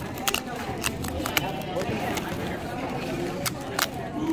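Cardboard pull-tab tickets being torn open by hand: a string of short, sharp snaps and rips, irregularly spaced, as the perforated paper tabs are peeled back.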